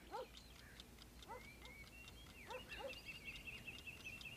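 Faint animal chirps: short falling chirps scattered throughout, joined about halfway in by a thin, high, wavering call.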